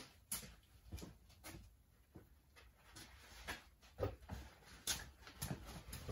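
Faint footsteps on a concrete floor: a handful of soft, scattered steps, about two a second at first and then more irregular.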